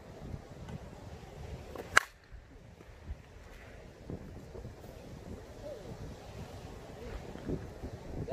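A 2021 DeMarini Vanilla Gorilla composite-barrel slowpitch softball bat striking a pitched softball: one sharp impact about two seconds in.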